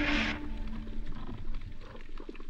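Background music ending about half a second in, overlapped at the start by a brief loud hiss; after it, faint underwater crackling clicks and a low rumble picked up by the camera in its housing.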